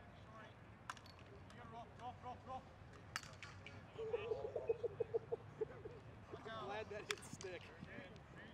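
Players' voices calling out across a lacrosse field, with a few sharp clacks of sticks hitting. Halfway through comes a quick run of loud, repeated shouts, the loudest sound here.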